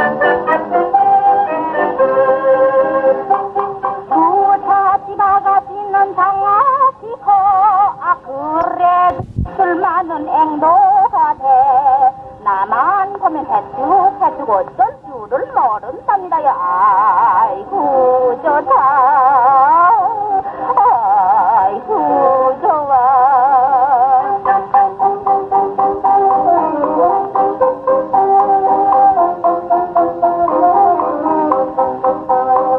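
A 1930s Korean popular song played from a 78 rpm shellac record: a woman singing with a wide vibrato over a small band. The sound is dull and narrow, with little treble, as on an old disc.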